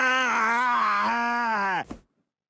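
A cartoon man's long, loud scream at a steady pitch as he jolts awake in bed, wavering slightly, then dropping and cutting off suddenly near the end.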